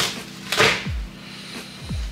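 Plastic bubble mailer rustling as a small bottle is pulled out of it, with one loud rustle about half a second in. Background music with a low thudding beat plays under it.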